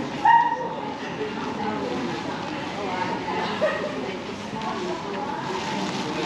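A dog yelps once sharply, the loudest sound, then gives a second, softer yelp a few seconds later, over the steady chatter of a busy pedestrian shopping street.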